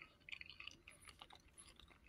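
Very faint chewing of a mouthful of banana, with a few quiet scattered mouth clicks.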